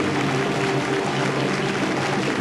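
Latin jazz quintet playing live: held instrument notes over a steady run of quick percussion strokes.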